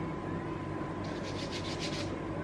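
Skin rubbing on skin as cream is worked into the back of a hand, with about half a dozen quick soft rubbing strokes in the last second.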